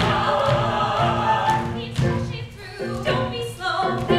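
A mixed group of male and female singers singing a show tune together, holding chords, with a brief dip in loudness about halfway through before the singing picks up again.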